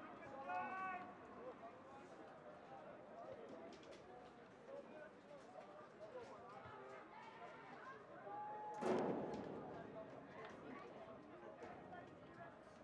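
Faint, indistinct voices of people calling and chattering across an open rugby field, with a louder raised voice just after the start. About nine seconds in comes the loudest sound, a sudden sharp burst.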